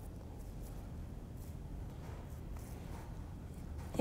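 Hands pressing and smoothing a ball of pie dough into a disk, heard only as a few faint, soft rustles over a low steady room hum.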